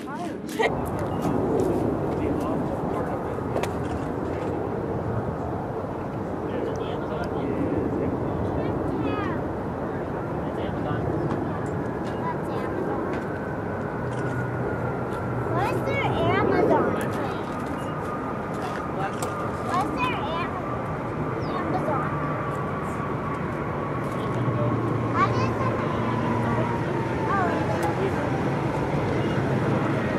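Jet engines of a Boeing 767-300 freighter rumbling steadily during its landing rollout, with a thin whine that falls slowly in pitch through the second half as the aircraft slows.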